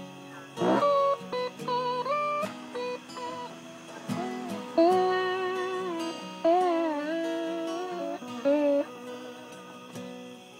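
Instrumental break between verses: a slide guitar plays a bluesy lead with gliding notes and held, wavering notes over an acoustic guitar strumming the chords.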